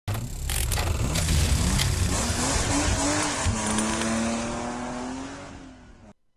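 Title-sequence sound effects of a race car: a loud engine with tyre squeal and a few sharp hits. The engine note then settles into a steady tone and fades out near the end.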